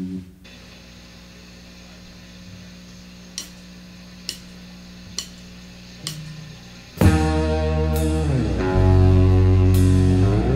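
A quiet steady amplifier hum with four sharp clicks a little under a second apart. About seven seconds in, a rock band of electric guitar, bass and drum kit comes in loudly, with a bass note sliding down and back up.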